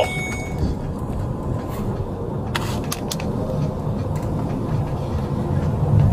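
Patrol car driving, heard from inside the cabin: a steady low road and engine rumble, with a few sharp clicks about halfway through.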